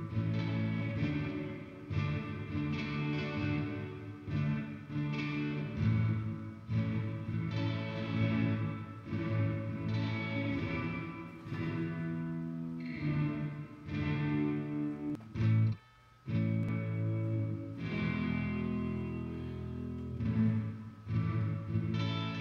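Guitar played through a Behringer DR600 digital reverb pedal set to its Fall mode: sustained notes and chords trailed by a very ambient reverb wash. The sound cuts out briefly about sixteen seconds in.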